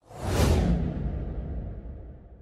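Cinematic whoosh sound effect: a sudden swell of noise that peaks about half a second in, then trails off into a deep, fading low tail.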